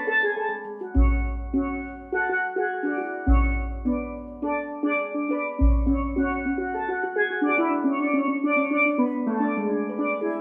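Steel pans played in a melodic line of struck, ringing notes, with a pedal-struck bass drum booming three times, about every two and a half seconds.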